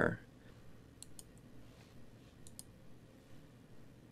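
Computer mouse button clicking: a few faint, sharp clicks about a second in and a quick pair more about two and a half seconds in, over quiet room tone.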